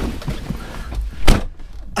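Handling and movement noise inside a car cabin as a person settles into the driver's seat: low rumbling and rustling, with a single thump a little past halfway.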